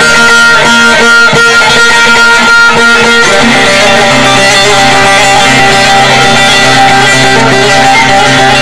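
Loud instrumental Turkish folk music played on plucked saz (bağlama), with no singing; the bass line shifts about three seconds in.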